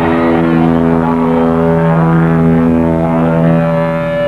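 Live rock band holding one loud, sustained chord that drones steadily with no beat.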